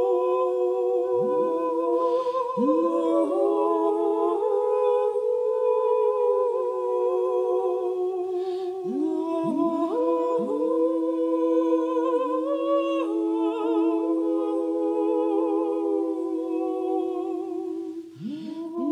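Layered wordless woman's voice humming and singing a cappella, several parts sustaining overlapping notes at once. Notes swoop upward into long held tones, and some higher notes carry a light vibrato in the second half.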